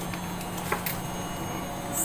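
A few light rustles of a plastic bag being handled, about three-quarters of a second in, over a steady low hum.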